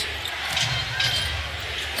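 A basketball being dribbled on a hardwood court, a few separate bounces, over the steady noise of an arena crowd.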